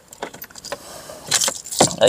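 Car keys jingling and clicking as a key is worked into the ignition, the jingling busiest in the second second. The key keeps springing back out of the ignition and has to be forced in.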